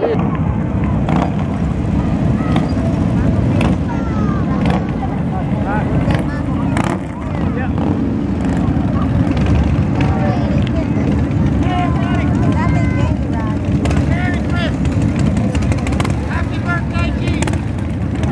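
Several large touring and cruiser motorcycles running past in a procession, a steady low engine rumble, with voices from the crowd over it.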